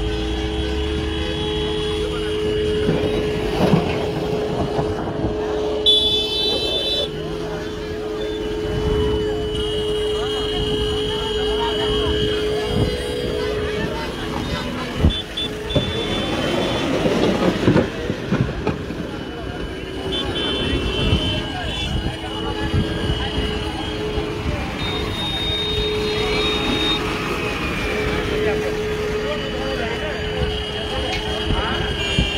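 A JCB backhoe loader's engine runs with a steady droning tone as it works close by, under the chatter of a crowd. A short, high horn toot sounds about six seconds in.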